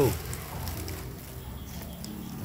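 Faint rustling and small clicks from hands tying a string onto a plastic toy truck, over a low steady hum. A voice trails off at the very start.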